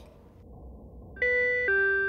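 Two-note ding-dong doorbell chime: a higher note, then a lower one that rings on and slowly fades.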